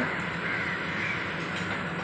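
Harsh, caw-like bird calls over a steady background hum.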